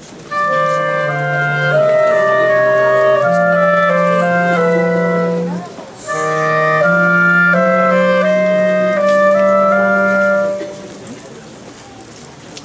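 A small woodwind group with clarinets playing slow, sustained processional music in harmony, in two phrases with a brief break about six seconds in.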